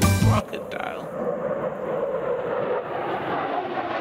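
Cartoon sound effect of a jet airliner flying, a steady rushing engine noise, starting as the last sung note of a song cuts off about half a second in.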